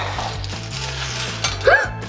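Small wire bingo cage being cranked, its balls tumbling and clinking against the wire for about a second and a half, with a click as a ball drops out. Background music runs underneath.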